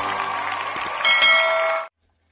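Intro music with its beat dropped out, then about a second in a bright bell ding that rings for under a second and cuts off abruptly: the notification-bell sound effect of an animated subscribe button.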